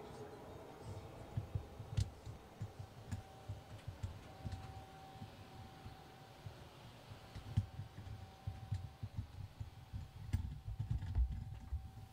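Handling noise from a handheld camcorder carried by a floating astronaut: irregular soft knocks and a few sharp clicks. Under it is a faint steady hum from the space station's equipment.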